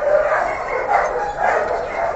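Dogs barking and yipping in a steady, overlapping chorus of short calls.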